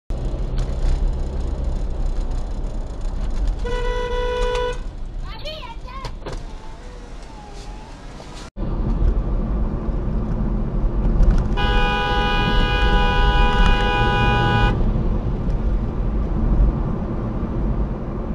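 Car interior road and engine rumble heard through a dashcam, with a car horn sounded for about a second about four seconds in. After an abrupt cut, louder road rumble and a long car horn blast of about three seconds near the middle.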